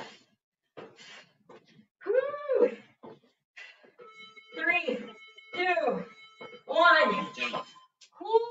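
A series of four drawn-out wordless cries, each rising and then falling in pitch and lasting under a second, starting about two seconds in, after a couple of seconds of faint breathing.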